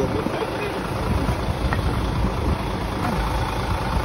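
Diesel truck engine idling steadily, a low rumble, with faint voices over it.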